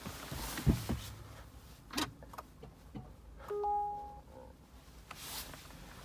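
A low thump, then a sharp click about two seconds in. About a second and a half later the Peugeot e-208's dashboard gives a short electronic chime of two steady notes lasting about half a second.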